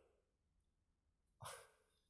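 Near silence, broken about one and a half seconds in by a single short, sharp sound lasting under half a second.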